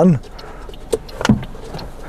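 Soft knocks and clicks as a man settles into the driver's seat of a small car, a Toyota Aygo, with two short knocks a little after a second in.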